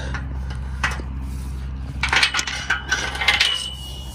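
Metallic clinks and rattles as a hydraulic hose's steel coupler end is handled and knocks against the cultivator's steel frame: a single click about a second in, then a burst of clattering over a second or so, ending in a brief thin ring.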